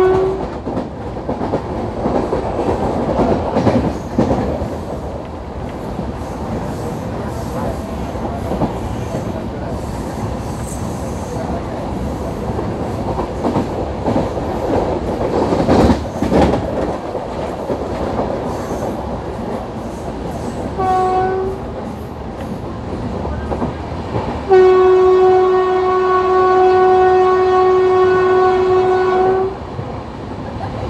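WAP-4 electric locomotive's horn sounding from ahead of the train: a blast cutting off just after the start, a short blast about 21 seconds in, and a long blast of about five seconds near the end, the loudest sound here. Underneath, the steady rumble and clatter of LHB coaches running at speed on the track, with one sharp click about 16 seconds in.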